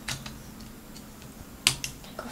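Small hard plastic clicks of LEGO pieces being handled as a minifigure is fitted into a LEGO police car: a faint click just after the start, then two sharp clicks close together near the end.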